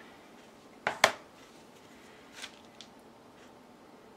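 Plastic lid being pulled off a container and set down: two sharp clicks close together about a second in, then a couple of fainter taps.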